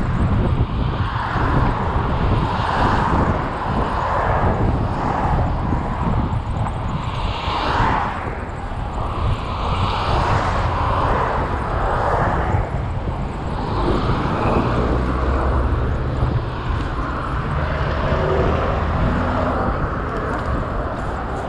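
Wind rushing over the microphone of a camera on a moving bicycle: a steady, deep rumble that swells and eases every second or two.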